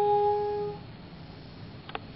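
Cornetto holding one long final note that stops about three-quarters of a second in, leaving room tone, with a faint click near the end.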